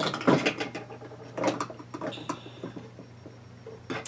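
Small clicks and clatters of makeup containers and brushes being rummaged through while she searches for a brush and highlighter, coming in irregular clusters, with a brief high squeak about halfway.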